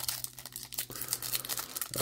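A baseball card pack's shiny foil wrapper being torn open by hand: a run of irregular crinkles and crackles.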